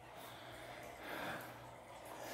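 Faint breathing close to the microphone, with a soft exhale about a second in, over quiet room tone.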